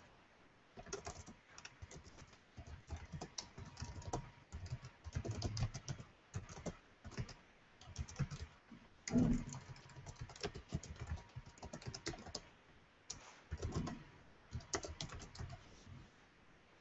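Typing on a computer keyboard: quick runs of key clicks broken by short pauses as a sentence is typed out.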